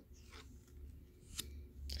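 Laminated tarot cards slid and flicked by hand as one card is lifted off the pile: a few faint rubs, then a sharp snap about 1.4 s in.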